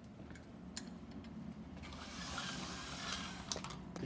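A few light clicks as plastic petri dishes are handled and set down on a windowsill, over a steady low hum. A soft hiss swells in the second half.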